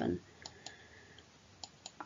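Faint clicks of a computer mouse, two pairs about a second apart, over near-silent room tone, after the tail of a spoken word.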